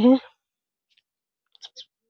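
A woman's voice finishing a spoken word, then silence broken by a few faint, short clicks, most of them near the end.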